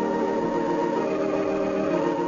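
Organ music playing slow, sustained chords.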